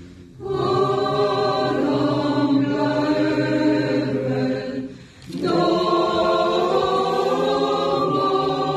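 Mixed choir of men and women singing long held chords in phrases, pausing briefly at the start and again about five seconds in before coming back in.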